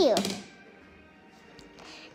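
A young girl's voice making a short vocal sound effect at the very start, sliding steeply down in pitch for about half a second, then a quiet stretch.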